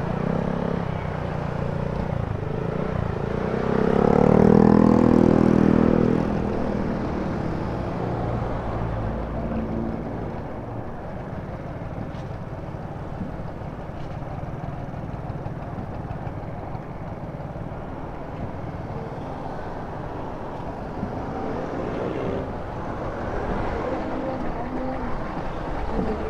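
Slow-moving street traffic heard from a motor scooter: a steady low rumble of engines and road. About four to six seconds in, a nearby engine swells louder and rises in pitch, then the rumble settles back to an even level.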